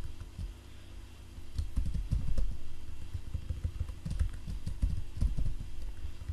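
Computer keyboard typing: irregular quick runs of key presses, sparse for the first second or so and busier after.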